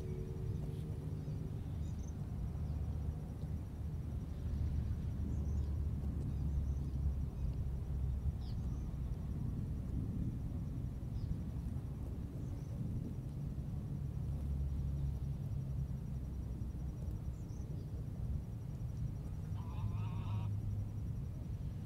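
Open-air park ambience: a steady low rumble with faint short bird chirps every second or two and a faint, even high trill. A louder honk-like call begins right at the end.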